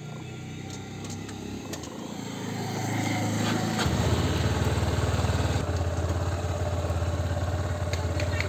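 Motorcycle engine running, a low steady drone with a fast pulsing beat. It grows louder and becomes much stronger about halfway through.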